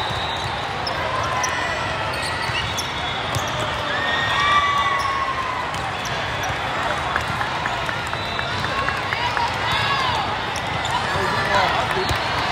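Busy sports-hall din during a volleyball rally in a large hall: many overlapping voices and shouts, short squeaks of sneakers on the court, and sharp smacks of the ball being hit, all at a steady level.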